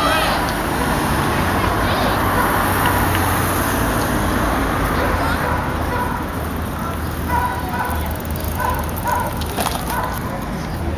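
Outdoor street sound with a steady rushing noise in the first half, then scattered talk from a crowd of people at a distance.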